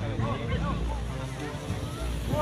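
Faint voices of people talking and calling out across an open field, with wind rumbling low on the microphone.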